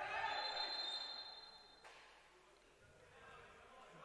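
Referee's whistle in a handball hall: one steady high blast lasting about a second and a half, over faint arena noise.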